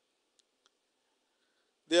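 Near silence in a pause of speech, broken by two faint clicks about a third of a second apart; a man's voice starts speaking right at the end.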